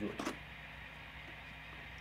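A man's voice finishing a word, with a short click just after, then quiet room tone with a low steady hum.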